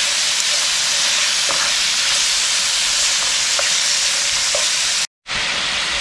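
Cubes of steak sizzling in olive oil in a nonstick frying pan as they are stirred with a spoon: a steady hiss with a few faint ticks. The sound cuts out to silence for a moment about five seconds in.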